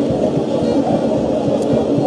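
Football stadium crowd noise: many supporters' voices blending into a steady murmur, with wavering sung or chanted tones in it.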